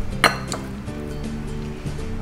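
Glass mixing bowls clinking together, a sharp ringing clink about a quarter second in and a lighter one just after, over steady background music.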